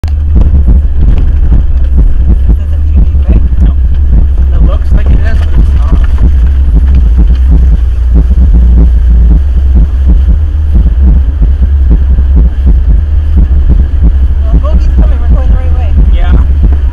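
Off-road vehicle driving a rough gravel and flooded trail, heard from inside: a loud, constant low rumble with frequent knocks and jolts as it bounces over the ground.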